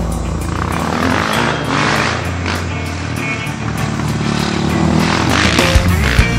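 Rock music soundtrack with a dirt bike's engine revving in the mix, swelling twice.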